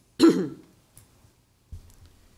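A man clears his throat once, sharply and briefly.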